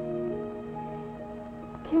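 Orchestral film score: slow, held notes sounding together in a quiet chord texture, with a man's voice coming in right at the end.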